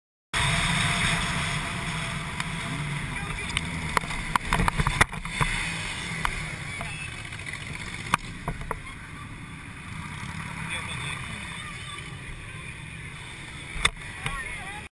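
Motorcycle riding heard from a helmet camera: a steady rush of engine and road noise. A cluster of sharp knocks comes about four to five seconds in, and a few more about eight seconds in.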